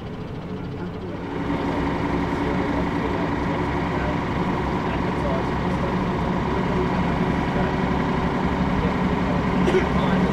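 Bus running along the road, heard from on board: a steady drone from the engine and drivetrain with a constant whine. It starts about a second in and replaces quieter street traffic.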